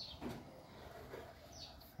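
Quiet background between remarks, with a faint high bird chirp near the end.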